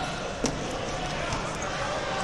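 Murmur of voices echoing in a large hall, with one sharp thud about half a second in, made by a wrestler hitting the mat.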